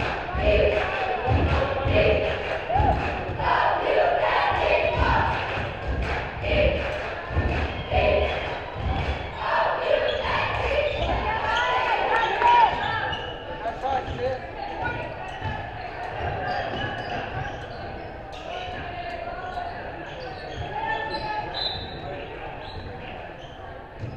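A basketball bouncing on a hardwood gym floor during play, with many low thumps, most frequent in the first half. Voices of players and spectators echo in the large gym, and the sound grows quieter after about the middle.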